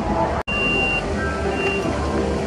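An electronic beeper on a mobility scooter sounds two high steady beeps, the first about half a second long and the second shorter, about a second apart, over outdoor background noise. Just before the first beep the sound cuts out for an instant.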